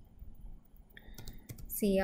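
A few key clicks on a computer keyboard a little after a second in, typing a line of code.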